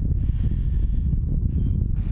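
Wind buffeting the camera's microphone: a continuous, gusting low rumble.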